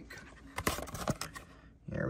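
Light clicks and rustling from a clear plastic card insert being handled, with a few sharp clicks about half a second and a second in.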